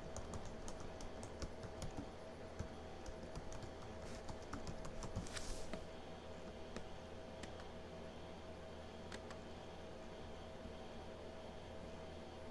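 Faint computer keyboard typing: a quick run of key clicks for about the first half, then only occasional clicks, over a steady low hum.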